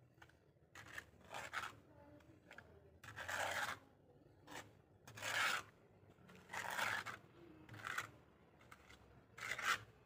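A steel trowel scraping wet cement render across a brick wall and the hand float, in a series of irregular scraping strokes roughly once a second. The loudest strokes last up to about half a second.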